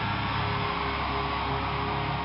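Stage fog jet blasting, a steady loud hiss, over a low steady hum from the stage amplifiers.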